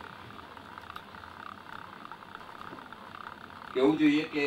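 A pause in a man's speech, filled by a steady background hiss; his voice comes back in near the end.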